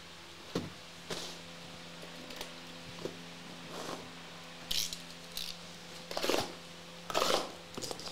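Shrink-wrapped cardboard blaster boxes being handled on a table: scattered light knocks and taps, with a few brief rustling scrapes of the plastic wrap in the second half, over a steady low hum.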